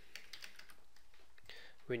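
Faint, irregular clicks of a computer keyboard being typed on.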